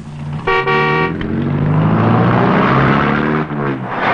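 A car horn sounds one short honk about half a second in, over a car engine that grows louder as it approaches. Near the end the engine's pitch falls as the car slows and pulls up.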